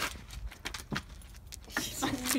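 A few light metallic clicks and jingles.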